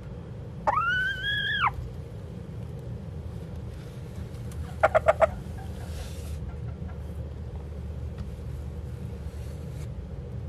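Hen sitting on a nest of hay, calling: one call about a second long near the start, rising and then holding, and a quick run of four short clucks about halfway through. A steady low hum runs underneath.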